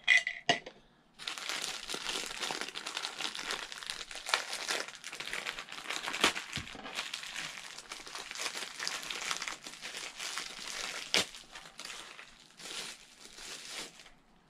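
Plastic packaging crinkling as a small vinyl figure is unwrapped from a black plastic bag and clear plastic wrap, with a few sharper crackles along the way.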